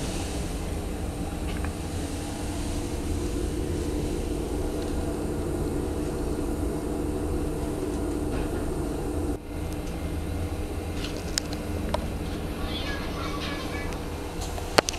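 Inside an SGP E1 tram under way: the steady rumble of wheels on rail and running gear, with a constant low hum. The sound dips briefly about nine seconds in, and a few sharp clicks come near the end.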